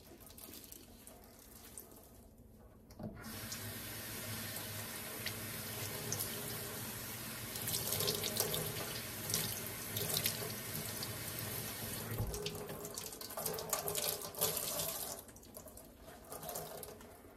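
Kitchen faucet running into a stainless steel sink while gloved hands work under the stream. The water starts about three seconds in and is shut off about nine seconds later with a low thud, followed by a few seconds of uneven splashing in the sink.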